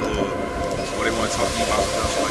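Techno track: a dense, sustained droning synth over a low pulsing beat, with fragments of a voice sample.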